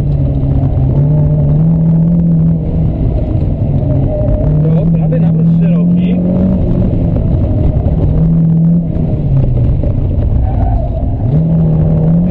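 Renault Clio Sport rally car's engine heard from inside the cabin under hard driving. The engine note climbs and then drops back in steps several times, as with gear changes between pushes on the throttle.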